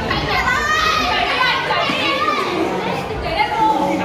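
Several young people's voices talking and calling out over one another, echoing a little in a large hall.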